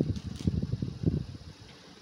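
Cloth and clear plastic wrapping rustling as folded suit fabric is moved by hand, in uneven bursts that die down after about a second.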